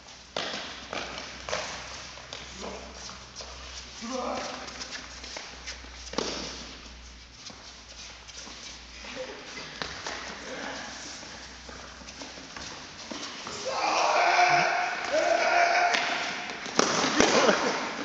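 Indoor football in a sports hall: the ball being kicked and players' running footsteps, with players calling out. The shouting gets louder over the last few seconds.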